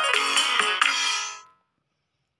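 Electronic keyboard app playing a chord over its accompaniment pattern, with pitched instruments and a fast, even percussion beat. It fades out and stops about a second and a half in.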